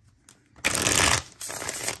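A deck of Shadowscapes tarot cards being riffle-shuffled. The two halves rattle together loudly for about half a second, starting just over half a second in, then a softer rustle follows as the cards are bridged back into one stack.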